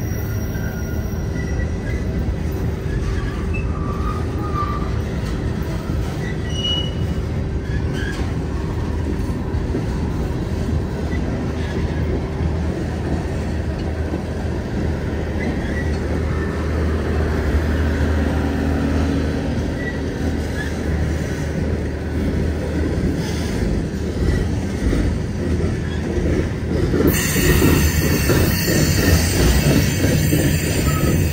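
Freight cars of a manifest train rolling past on steel wheels: a steady rumble with a thin steady tone over it. About three seconds from the end a hiss sets in and the noise gets louder.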